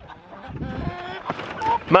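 Chickens clucking inside a mobile chicken coop as it is dragged through deep mulch, over a low scraping rumble from the drag.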